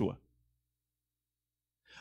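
A man's speech trailing off at the start, then dead silence for about a second and a half before his voice returns at the very end.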